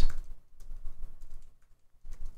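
Fast typing on a computer keyboard: an uneven run of key clicks that thins out toward the end.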